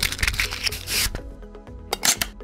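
Logo-sting music with several quick swishing, glitchy sound effects over a steady low tone.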